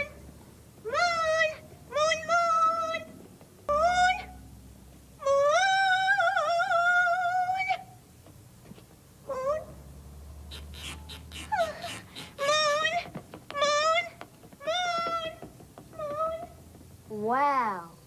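A cat meowing over and over, about a dozen short meows with one long, wavering drawn-out meow about five seconds in.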